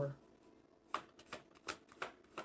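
A deck of tarot cards being shuffled by hand: faint, short snaps of the cards, four or so, starting about a second in after a brief quiet.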